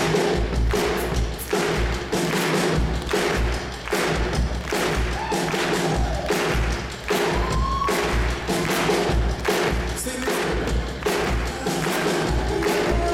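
Live pop-rock band music with a steady kick-drum beat about twice a second under guitars and keyboard, with little singing in this stretch.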